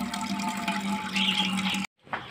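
Water pouring from a pipe spout into a steel bucket, a steady splashing with a steady hum underneath. The sound cuts off abruptly near the end.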